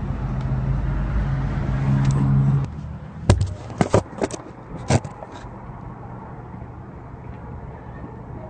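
A steady low vehicle engine hum runs and cuts off suddenly about two and a half seconds in. Then a few sharp knocks of a phone being handled follow close together over faint background noise.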